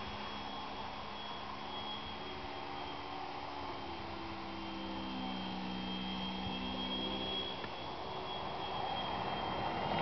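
Electric motor and propeller of a small foam RC model plane, a steady hum with a thin high whine, shifting in pitch in the middle and growing louder near the end as the plane comes in low.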